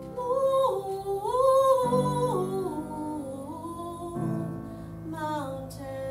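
Song: a woman singing a long, drawn-out melodic line that glides and drifts downward, over sustained keyboard chords that change about every two seconds.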